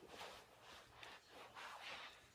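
Near silence: room tone with a few faint, soft noises.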